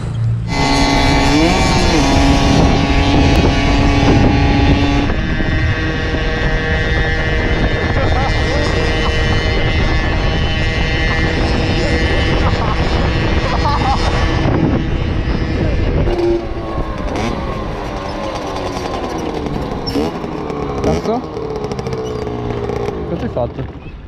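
Derestricted 50cc two-stroke motard engine with a full Giannelli exhaust, running at steady high revs while riding, with wind noise on the microphone. In the second half the engine pitch rises and falls as the bike slows and revs.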